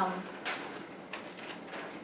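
Sheets of paper being handled on a tabletop: a short rustle about half a second in, and a faint tick a little past one second, over quiet room tone.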